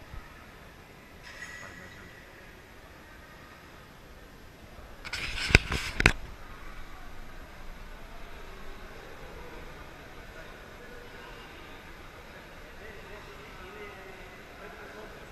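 Indistinct voices and hall ambience at an indoor swimming pool, with a brief loud scuffle about five seconds in that carries two sharp knocks half a second apart.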